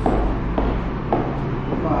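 High-heeled boots striking a hard floor as a person walks: three sharp heel clicks about half a second apart, over a steady low room hum.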